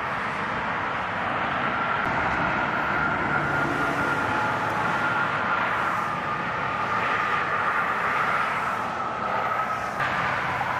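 Steady freeway traffic noise: a continuous hiss of tyres on wet road, with engines and a faint whine running under it.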